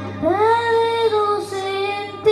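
A boy singing into a handheld microphone over backing music: one long note that slides up into pitch and then steps down a little toward the end.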